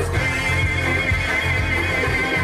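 Séga music with frame drums keeping a steady low pulse, and a high wavering held note running over it.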